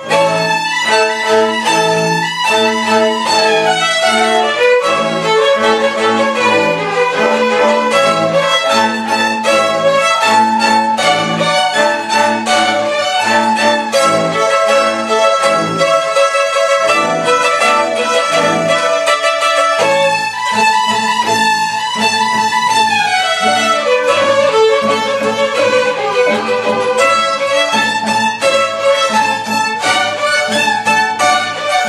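Student string orchestra of violins and cellos playing a lively classical piece at full volume, all coming in together at once on the cue and playing on without a break.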